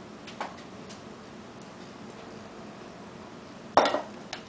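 A few light ticks of a pastry brush against a small glass bowl of egg-yolk glaze, then one loud clack near the end as the glass bowl is set down on the counter.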